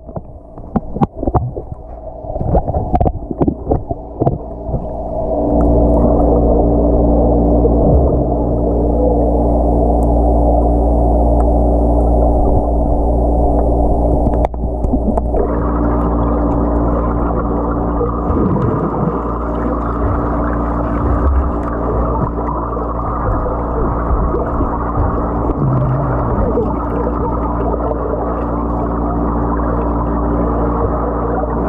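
Muffled underwater pool sound from a submerged action camera. Splashes and bubble clicks come in the first few seconds, then a steady low hum with several held tones, growing brighter about halfway through.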